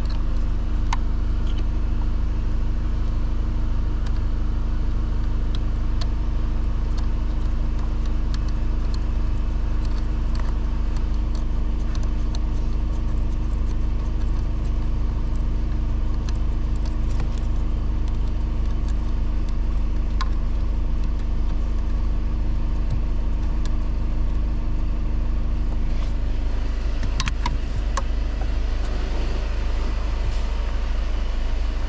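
A steady low mechanical hum throughout, with scattered light metallic clicks of a ratchet and socket extension being worked on a bolt behind a car's pedal box, and a short flurry of clicks near the end.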